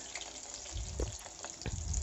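Potato cubes deep-frying in hot oil: a faint, steady sizzle, with a couple of soft knocks as a perforated steel skimmer stirs them in the aluminium pan.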